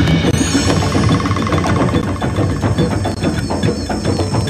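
Title theme music driven by a rapid, even run of clicking percussion, with steady high tones above it.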